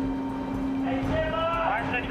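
A man's voice calling out during the second half, over a steady low hum.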